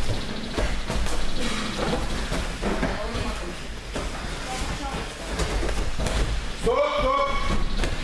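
Indistinct voices talking in a large hall, with the thuds of wrestlers being thrown down onto the mats.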